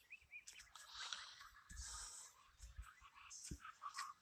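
Near silence: faint room noise with a few soft clicks.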